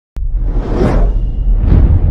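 Cinematic logo-intro sound effects: a deep rumble that starts suddenly, with two whooshes about a second apart.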